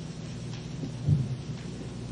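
Steady low hum and hiss of an old lecture-room recording during a pause in speech, with one soft low thump about a second in.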